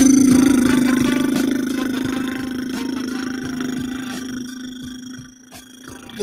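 The closing note of a radio show's intro jingle: a sustained low tone with a ringing chord above it, fading out over about five seconds.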